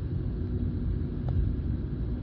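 In-cabin driving noise of a 2017 Skoda Rapid Spaceback with its 1.2 TSI turbocharged four-cylinder petrol engine at town speed: a steady low rumble of engine and tyres on the road, with a faint steady hum.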